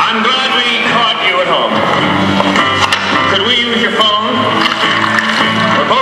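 Film soundtrack played loudly through theatre speakers: music with a voice over it.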